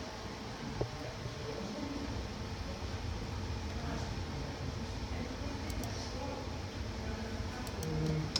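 Steady low room noise with a sharp click about a second in and a couple of faint ticks near six seconds.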